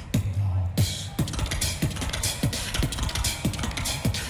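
Solo beatbox performance played back: a steady beat of deep kick-drum sounds that drop in pitch, with snare and hi-hat sounds between them.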